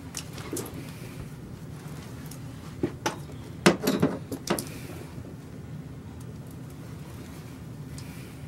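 Pearls and beads sewn on a heavy overskirt clicking and clinking against each other as the skirt is handled and fastened at the waist. There are a few scattered clicks, then a quick cluster of louder clinks about four seconds in.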